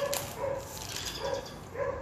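A dog barking in a string of short, evenly spaced barks, about two a second.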